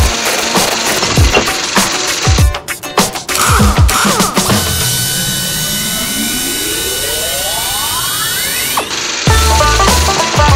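Cartoon sound effects: a run of low, falling-pitch thumps for the first few seconds, then an electric buzz that rises steadily in pitch for about four seconds as a machine zaps an egg. It cuts off near the end and bouncy music with a bass line starts.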